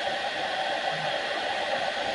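Water boiling in a 1.2-litre, 1200-watt Grelide stainless-steel electric kettle: a steady, even hiss.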